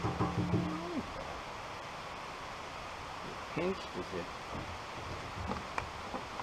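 Faint, steady outdoor background hiss with the ATV's engine stopped, broken by a few short spoken words. A single sharp click comes near the end.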